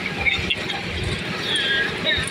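Cargo truck driving over a rough dirt road, its open steel bed rattling and knocking over the bumps, with a few brief high squeals.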